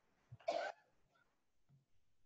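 A person coughs once, briefly, about half a second in, over faint room tone.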